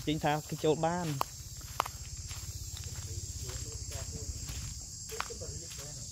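Insects buzzing steadily and high-pitched in woodland, with a few footsteps on a dirt path and a low, fast buzz underneath.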